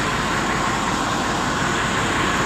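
A Ford 4610 tractor's three-cylinder diesel engine idling steadily.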